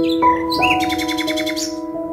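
Soft background music of held keyboard notes, with a bird twittering in a quick high trill for about a second near the start.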